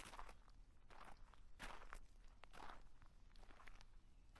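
Near silence, with a few very faint, short rustling scuffs.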